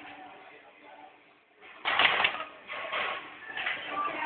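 Wire-stripping machine for HDMI cable inner wires cycling: a loud burst of clatter about two seconds in, then two shorter bursts less than a second apart.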